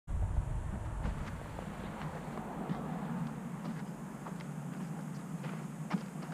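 Footsteps on dry, loose soil coming closer: irregular soft scuffs spaced about half a second to a second apart over a steady outdoor hiss, with a low rumble in the first second.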